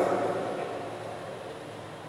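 A man's voice dying away in the reverberation of a large church, fading over about a second, then room tone: a faint steady low hum with light hiss.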